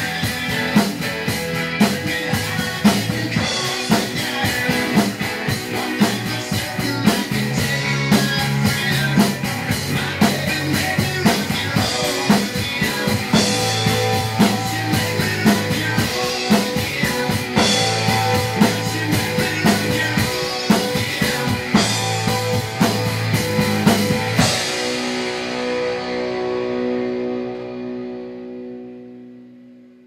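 Rock song with electric guitar and a live acoustic drum kit played along, the drums hitting steadily. About three-quarters of the way through the drumming stops on a final chord, which rings on and fades out.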